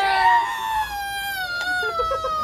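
A person's voice drawing out a contender's name in one long, slowly falling call, boxing ring-announcer style.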